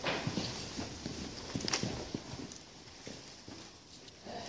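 Scattered footsteps, knocks and shuffling of a congregation moving about in a church, irregular and fading toward the end.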